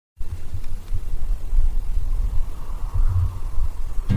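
Loud, uneven low-pitched rumble with no clear pattern.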